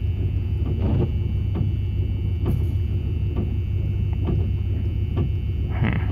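Steady low rumble of the work van's idling engine, with faint small clicks from a key and brass lock cylinder being handled.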